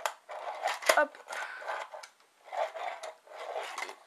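Fingerboard moving on a toy mini ramp: a sharp clack about a second in as the board pops an ollie, with the small wheels rolling and scraping on the ramp around it.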